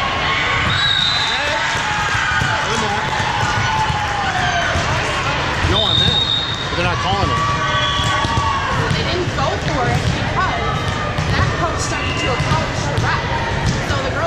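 Busy indoor volleyball hall: balls being hit and bouncing on the hardwood floors, short high squeaks of sneakers, and a steady babble of voices.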